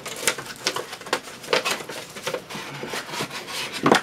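Cardboard box and packing being handled as a computer power supply and its cables are lifted out: an irregular run of rustles, scrapes and light knocks, with the loudest knock just before the end.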